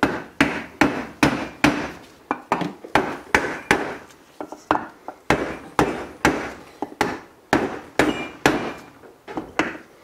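Hammer blows on a wooden block held over a cylinder liner, driving the interference-fit liner down into a BMW N20 aluminium engine block. The sharp strikes come steadily, about two to three a second.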